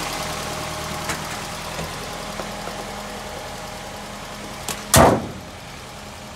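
Four-cylinder car engine idling steadily, slowly growing fainter, with a loud slam about five seconds in as the bonnet is shut.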